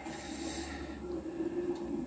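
A man breathing out steadily through his nose during a pause in speech.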